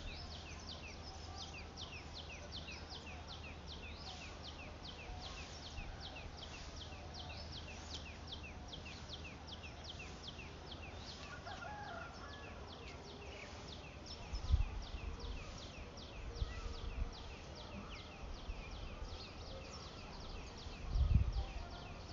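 Outdoor field ambience dominated by a rapid, steady series of short high chirps, several a second and never pausing. A few low rumbles on the microphone come in the second half, the strongest near the end.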